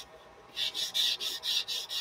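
Rolled paper towel rubbed over pencil graphite on drawing paper, blending the drawn lines. Short rubbing strokes at about four a second begin about half a second in.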